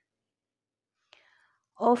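Dead silence, broken about a second in by a faint short click, then a woman's voice begins speaking just before the end.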